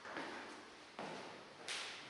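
Slow footsteps on a stone floor, about three steps, each with a short echo in a small vaulted chapel.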